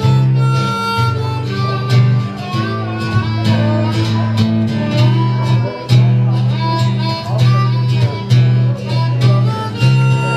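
Acoustic guitar strummed with a harmonica playing held notes over it, a live instrumental passage.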